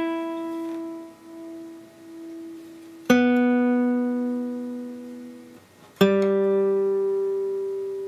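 Granada nylon-string classical guitar, solid spruce top with mahogany back and sides, its open strings strummed and left to ring. One chord rings on from just before, two more are struck about three and six seconds in, and each fades slowly, showing the guitar's long sustain.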